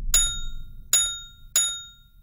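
Three short bright chime sound effects of an animated like-and-subscribe button, each ringing briefly: one at the start, one about a second in, and one about half a second later. A low rumble fades out under the first.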